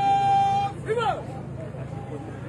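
A drill command shouted across a parade ground: a long, steadily held note, then a short note that rises and falls about a second in.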